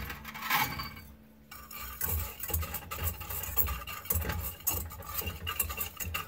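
A dry powder is poured from a small bowl into a stainless steel pan, with a brief rush in the first second. From about two seconds in, a wire whisk stirs the dry mix, ticking and scraping against the metal pan.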